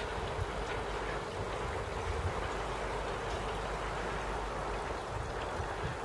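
Steady rush of running water from a garden pond's water feature, an even splashing hiss that neither rises nor falls.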